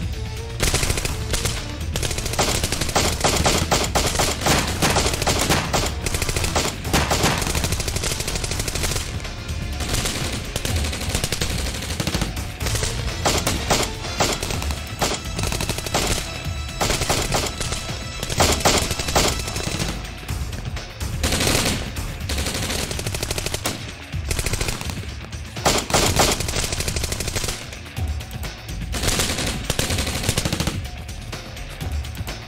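Gunfire in an exchange of shots: bursts of shots in quick succession, coming again and again with short lulls between them.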